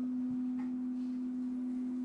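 A steady low hum: one unchanging tone that runs on without a break.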